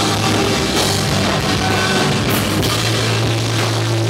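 Live rock band playing loudly: electric guitar through an amp stack over a drum kit, with no break in the music.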